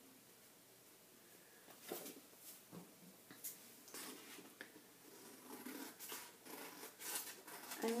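Scissors hand-cutting a piece of paper: faint, irregular snips and paper rustling, starting about two seconds in.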